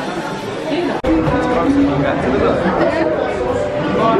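Indistinct chatter of several voices, with a sharp click about a second in, after which the sound is louder and fuller.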